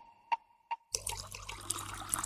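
Three short, ringing ticks about 0.4 s apart, then from about a second in a steady water-like hiss with fine crackle and a low hum: the rain-style ambience bed that opens a lofi track.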